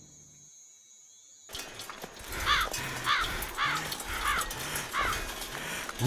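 Harsh bird calls, about five in a row, roughly one every two-thirds of a second, over a steady outdoor background hiss. They begin about a second and a half in, after a moment of near silence.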